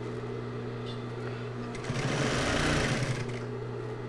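An industrial sewing machine's motor humming steadily. About two seconds in it stitches for a second or so, a louder, fast rattle of the needle mechanism sewing through four layers of fabric, then drops back to the motor hum.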